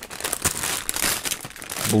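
Clear plastic bags around model-kit runners crinkling as they are handled and lifted, a run of irregular rustles.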